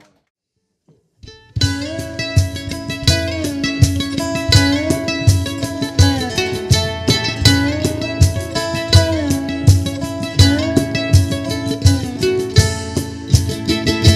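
Instrumental opening of a country song: a lap-played resonator guitar (dobro) sliding between notes over a strummed acoustic guitar, in a steady rhythm. It starts abruptly after about a second and a half of silence.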